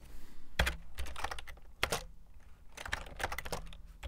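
Typing on a computer keyboard: scattered keystrokes with two louder key strikes in the first two seconds, then a quick run of keys near the end.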